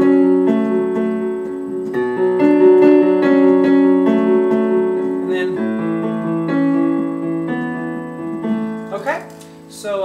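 Piano playing a slow riff of held notes that ring on under the sustain pedal, the chord changing about two seconds in and again near six seconds. A man's voice starts near the end.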